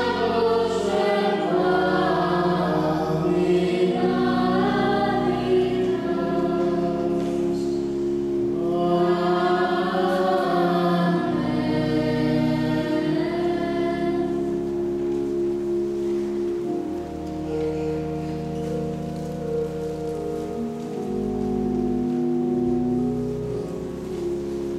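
Choir singing over sustained organ chords, with held bass notes that change in steps. The voices stop about fourteen seconds in and the organ carries on alone with long held chords.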